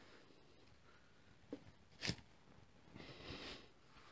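Near silence: room tone, with two faint short knocks about half a second apart in the middle as pastry parcels are handled and set on a metal baking sheet.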